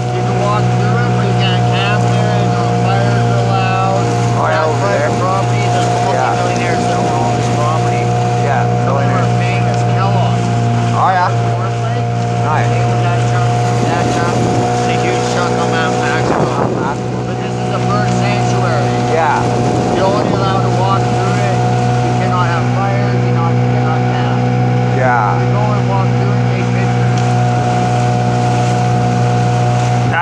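A motorboat's engine running at a steady speed underway, a constant unchanging drone.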